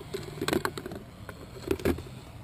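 Chain-cleaning devices being handled and set down: a scatter of light clicks and knocks, bunched about half a second in and again near the end.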